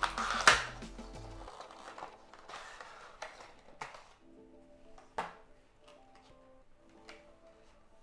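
Background music over the handling of lure packaging: a loud sharp crackle about half a second in, then scattered rustles and clicks as a clear plastic tray is slid out of a cardboard box.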